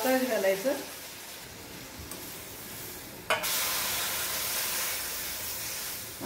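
Hot jaggery water hitting roasted rice semolina in a hot steel kadhai, sizzling and steaming as a wooden spatula stirs it. The sizzle jumps suddenly louder a little past halfway.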